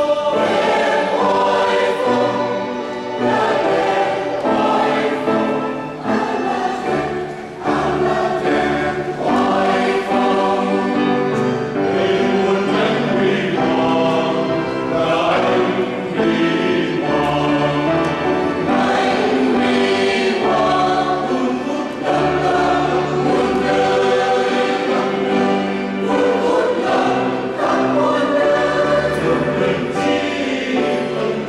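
A church choir of women and men singing a Vietnamese hymn together, holding long chords that change every second or so.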